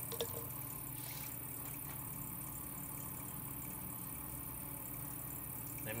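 Electric potter's wheel running with a steady low motor hum, with a couple of faint clicks in the first second.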